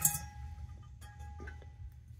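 Faint metallic clinks and a thin ringing tone as the float ball and its rod are lifted out of a cast iron trap body. The ringing fades out about a second and a half in.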